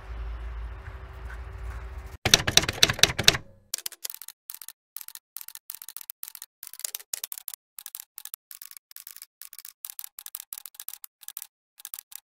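Typewriter keystroke sound effect: about two seconds in, a loud dense flurry of key strikes, then single sharp key clicks at an uneven pace, several a second, running to the end. Before it, a low outdoor rumble with a faint steady hum.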